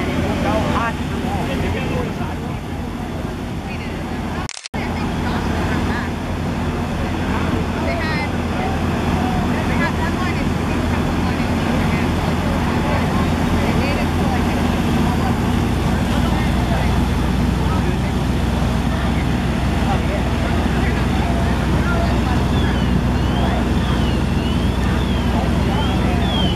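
Fire engine's diesel running steadily while it pumps water to the hose lines, with firefighters' voices over the engine.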